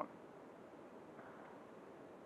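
Near silence: a faint steady background hiss.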